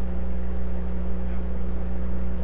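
Steady low electrical hum with an even hiss over it, the recording's own background noise; nothing else stands out.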